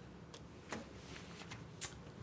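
Faint rustling and a few small ticks from a paper stencil being handled against a pumpkin.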